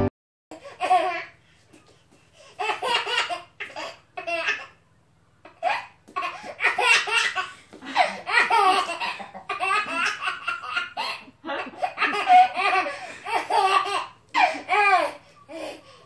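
A baby boy laughing hard in repeated fits of high-pitched giggles, one burst after another with short pauses between.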